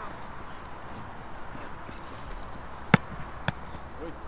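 Two sharp thumps of a football being struck, about half a second apart, roughly three seconds in, over a faint open-air background.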